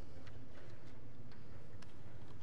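Room tone in a large sanctuary: a steady low hum with scattered small clicks and taps at irregular intervals.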